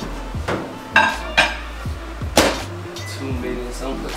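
Four sharp clinks and knocks of a glass bowl and dishes being handled, the last the loudest, over quiet background music.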